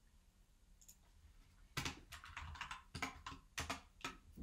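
Computer keyboard typing: a quick run of keystrokes starts about two seconds in, after a quiet stretch, and lasts about two seconds.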